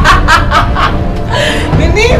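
A woman laughing, a quick run of laughs through the first second, over background music.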